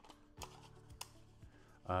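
A few light plastic clicks and taps from a DEERC D50 drone being handled, the sharpest about a second in.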